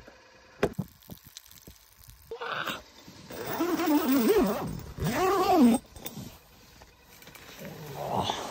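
A man's long, wordless, tired groan in two drawn-out swells that rise and fall in pitch, starting a little before halfway through. Light rustling and clicks of gear come before it.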